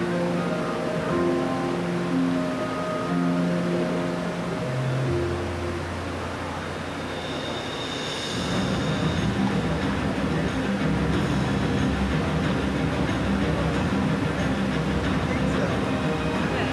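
Theme-park plaza ambience: background area music of long held notes and chords under crowd voices. From about eight seconds a steady low rumble rises and covers the music, with a brief hiss as it starts.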